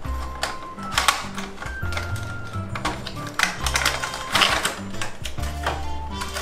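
Background music with a stepping bass line and held tones. Over it, rapid clicks and rattles as the cardboard box and the clear plastic blister tray of a small robot toy are handled and opened.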